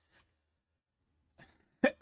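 Near silence for most of the time, then near the end a man's short, sharp vocal sound, like a quick catch of breath, just before he speaks again.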